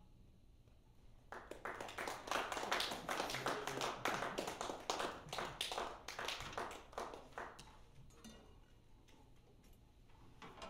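Small audience applauding: scattered, distinct claps that start about a second in, build quickly, and die away near the end.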